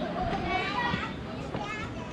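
Children's voices chattering and calling out, several high-pitched voices overlapping, with no single clear speaker.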